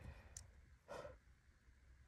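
Near silence, with a faint keyboard tap at the start and one soft breath about a second in.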